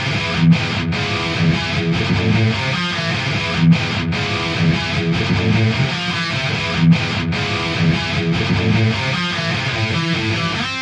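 Hamer Phantom electric guitar with Hamer pickups, played through heavy distortion in a multi-tracked heavy metal riff. The phrase repeats about every three seconds, each time broken by two quick stops.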